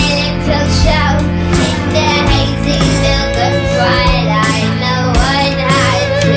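Live acoustic band music: a high, childlike female voice sings with a wavering pitch over sustained low instrument notes.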